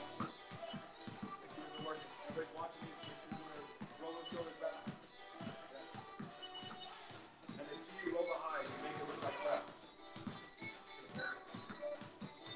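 Basketballs bouncing on a concrete floor in quick, uneven repeated dribbles, pushed back and forth between the legs, over background music with a voice in it.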